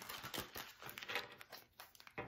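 Tarot deck being riffle-shuffled by hand: a rapid flutter of card edges flicking together, thinning out near the end.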